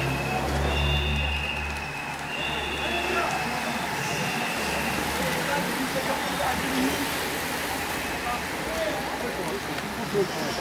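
Roadside sound of a bike race going by: a steady rush of noise with indistinct spectator voices. A motorcycle engine runs low for the first two seconds.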